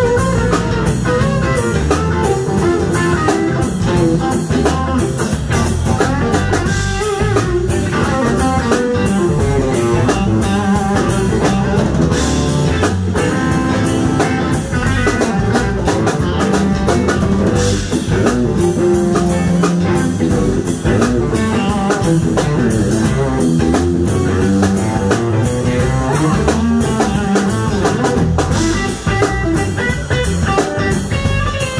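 Live blues band playing an instrumental passage: electric guitar over bass guitar and a drum kit, with no vocals.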